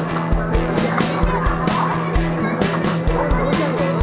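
Music with a steady beat.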